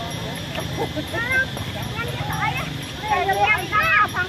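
Several people talking and calling out in high voices over a steady low background noise, the voices getting livelier in the second half.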